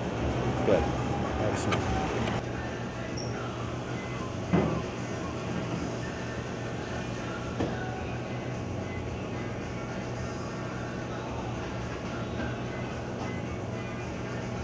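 Shop ambience: background music over a steady low hum, with a few brief sounds in the first couple of seconds and again about four and a half seconds in.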